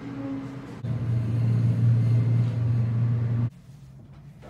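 A steady low rumble that grows louder about a second in and cuts off suddenly near the end.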